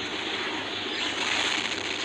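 Steady rushing noise of rocket thrusters firing, with no distinct bangs.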